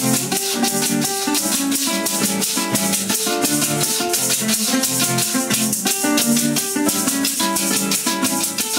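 Acoustic guitars strumming and picking an instrumental passage of Colombian llanero music, with maracas shaking a fast, even rhythm.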